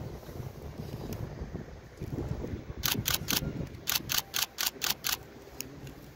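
Camera shutters clicking in quick bursts: three clicks about three seconds in, then a faster run of six at about four or five a second, over a low outdoor rumble of wind.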